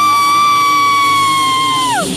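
A singer's long high-pitched scream, one held note that swoops up into pitch, stays level for about two seconds and drops away at the end.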